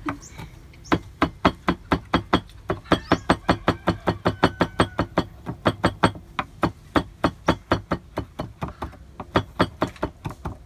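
Kitchen knife chopping rapidly on a wooden cutting board, a steady train of sharp knocks about four to five a second that starts about a second in and pauses briefly near the end.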